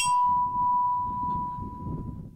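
A metal memorial bell struck once, a bright clang whose high overtones die away fast, leaving one clear steady ringing tone that slowly fades. A low rumble of background noise runs underneath.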